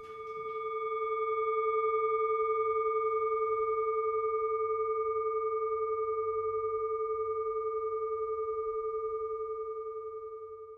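A singing bowl rings with one long, low note and higher overtones. It swells over the first couple of seconds and then sustains with a slow, regular wobble.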